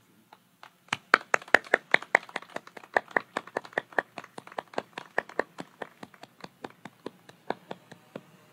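Scattered applause from a small group of people: distinct separate claps, starting about a second in and thinning out toward the end.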